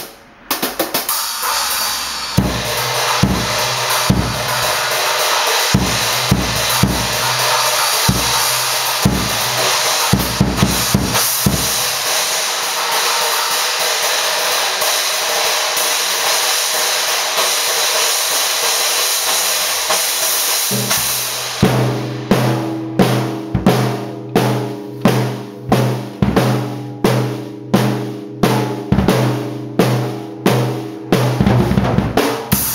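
Acoustic drum kit played hard: a dense wash of cymbals over bass drum and tom hits for about twenty seconds, then a steady repeated beat with about two strong strokes a second.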